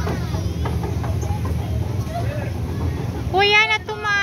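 Faint scattered voices of children over a low steady rumble, then a loud, high-pitched shouted call near the end.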